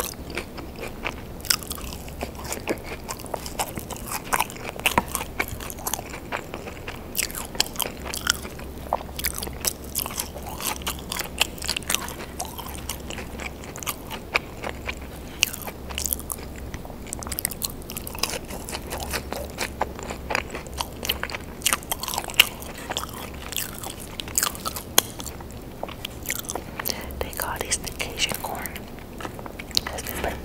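Close-miked chewing of Cajun-seasoned fries dipped in ketchup: a steady run of soft bites, wet mouth clicks and smacks.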